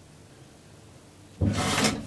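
Manually operated elevator door being pushed open, starting with a thud about one and a half seconds in and followed by a short scraping rub.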